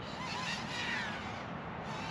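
Steady wind noise buffeting the microphone outdoors, with a few faint high warbling notes in the first second and a half.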